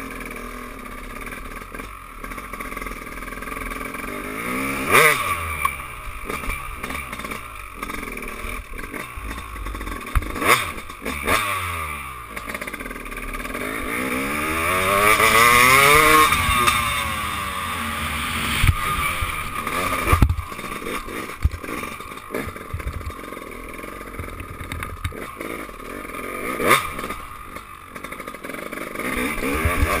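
Dirt bike engine revving up and falling back again and again as it is ridden hard, heard from a helmet-mounted camera. The engine swells to its loudest about halfway through, and several sharp knocks cut across it.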